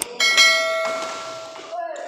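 Notification-bell ding sound effect of a subscribe-button animation: a sudden bell-like ring of several steady tones that fades away over about a second and a half.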